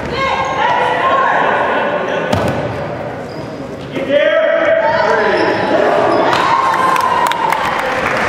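Basketball bouncing on a hardwood gym floor during play, a few sharp knocks in a large, echoing hall, with voices alongside and the play getting louder about halfway through.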